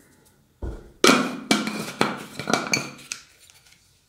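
A low thump, then a quick run of sharp clinks and knocks over about two seconds with a brief ring: hard containers such as a metal pot and glass jars being handled on a table.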